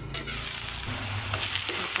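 Chopped onion and green chilli sizzling steadily in hot oil in an aluminium kadai, uncovered as the lid comes off, sautéed soft. A few faint clicks sound over the sizzle.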